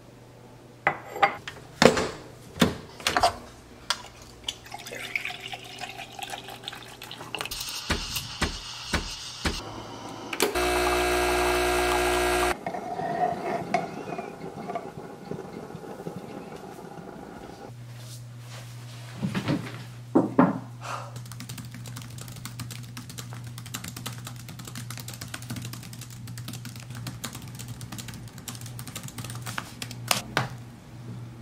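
Sounds of making a cappuccino: a ceramic mug set down on a stone counter with a few clinks, a hiss, then a loud even buzz from a coffee machine for about two seconds, and steamed milk poured into the mug. Later comes a steady low hum with faint laptop key clicks near the end.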